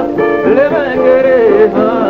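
Ethiopian gospel song: a male voice sings a melody that slides up and down, then holds a note, over instrumental backing.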